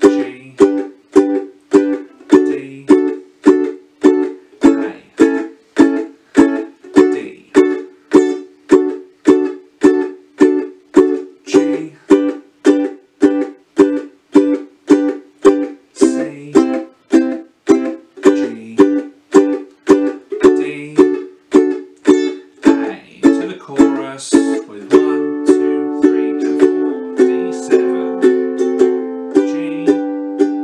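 Fender ukulele strummed with a finger in a staccato pattern, each chord cut short by muting the strings with the strumming hand, at about two strums a second. About twenty-five seconds in, the strums change to fuller chords left to ring.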